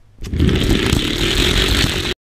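Die-cast Hot Wheels cars rolling fast along orange plastic track, a loud, dense rattling whir that starts suddenly about a quarter second in and cuts off abruptly at the end.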